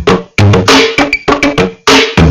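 A loud live band playing: sharp drum hits, about three or four a second, under a held electric guitar note.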